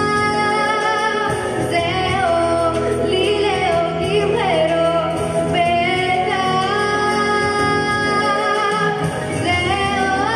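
A girl singing solo into a handheld microphone, with long held notes and slides in pitch.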